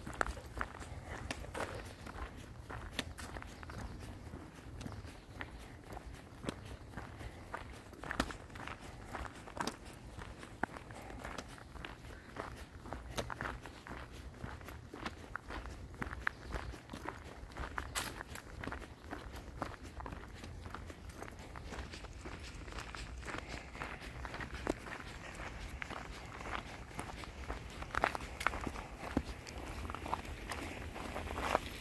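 Footsteps crunching on a crushed-gravel trail at a steady walking pace, over a low, steady rumble.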